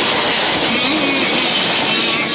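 Steady, loud rushing noise with no clear rhythm or pitch.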